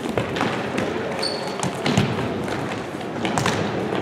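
Futsal ball being dribbled and kicked on a hardwood gym floor: a run of short knocks and footfalls over the general hubbub of a large gym, with a short high squeak about a second in.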